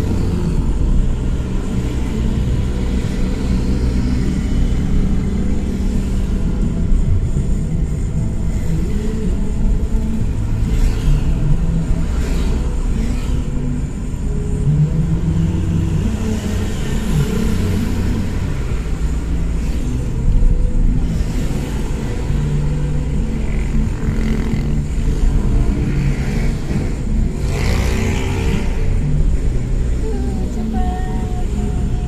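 Car driving through city traffic: a steady low rumble of engine and road noise. Near the end, a louder swell as another vehicle passes close.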